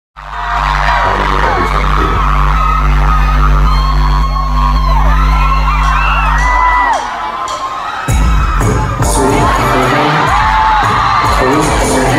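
Live pop concert heard from inside the crowd: a deep synth bass note held under loud fan screaming, dropping away about seven seconds in, then a drum beat kicking in about a second later as the screaming goes on.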